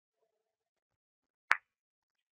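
A single sharp click of two carom billiard balls colliding, about one and a half seconds in: the cue ball striking the second object ball to score a half-ball shot played with two tips of side spin.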